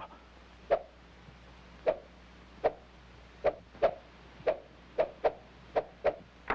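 Cartoon sound effect of a tennis ball being hit back and forth in a warm-up rally: about nine sharp, hollow pocks at uneven intervals, most of them a second or less apart.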